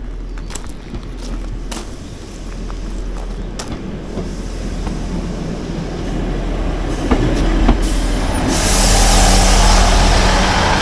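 ScotRail Class 158 diesel multiple unit approaching and running in along the platform as it slows for the request stop, its engine and wheel noise growing steadily louder. A brief high squeal sounds about eight seconds in, as the train comes alongside.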